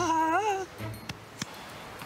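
A man's voice stretching out the last word of an exclamation with a wavering pitch for about half a second, then a low background with a couple of faint clicks.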